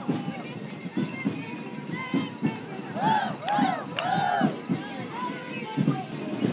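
Marching schoolchildren chanting or shouting in short, high calls that rise and fall, often three in a row about half a second apart, over scattered thuds of footsteps.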